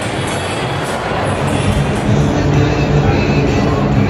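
A formation of single-engine propeller planes flying over, their engines droning and growing louder about halfway through.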